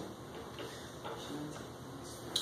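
Faint ticking over low, steady room noise.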